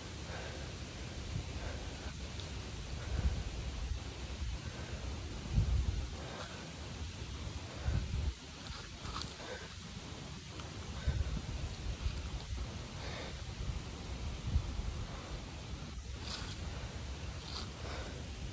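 Irregular low rumbling of movement and handling noise on a body-worn camera microphone, with faint rustling and a few light clicks.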